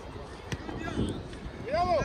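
Voices calling out across a soccer field, with one sharp knock of a ball being kicked about half a second in and a loud, short shout that rises and falls near the end.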